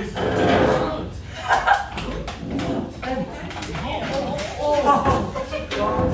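Several young men's voices talking and exclaiming over one another in a room, with a few brief knocks among them.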